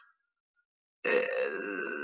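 About a second of silence, then a man's long, drawn-out 'uh' hesitation sound, held at a steady pitch.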